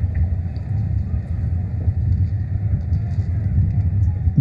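Steady low rumble of outdoor background noise picked up by an open podium microphone.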